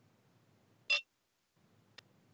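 A faint low hum broken by one short, sharp blip about a second in, with a tiny click at the end.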